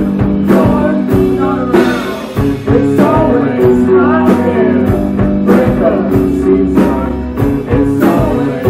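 Live rock band playing: electric guitar, bass guitar and drum kit, with sung lead vocals over a steady beat.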